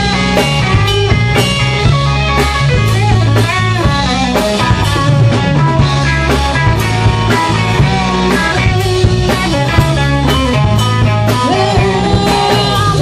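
Rock band playing: electric guitar over bass and drum kit with a steady beat.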